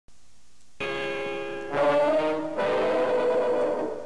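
Cartoon title music: three held brass chords in a row, each coming in under a second after the last, fading away near the end.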